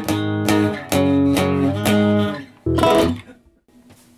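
Electric guitar strummed in chords, about two strums a second, with a final chord a little under three seconds in that rings and fades out.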